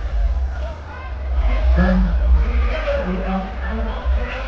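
Live concert sound through a big PA, recorded from the crowd: a heavy, distorted bass rumble throughout, with a man's voice into the microphone coming in about a second and a half in.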